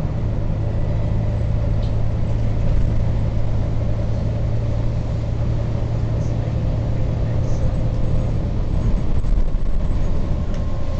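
Bus engine running steadily with road noise, heard from inside the moving bus: a constant low drone with a fainter whine above it.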